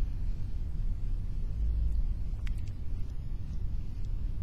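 A low, steady rumble, with a faint click about two and a half seconds in.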